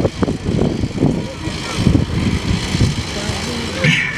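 A man's voice over a PA loudspeaker system, muddy and indistinct, with no clear words.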